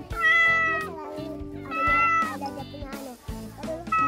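Cat meows, short and slightly falling in pitch: two about a second and a half apart, with a third starting right at the end. Background music plays underneath.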